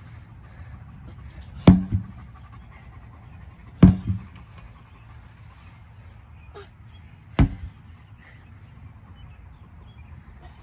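Sledgehammer slamming down onto a large rubber tractor tire three times, a few seconds apart. Each strike is a heavy thud followed at once by a smaller second knock.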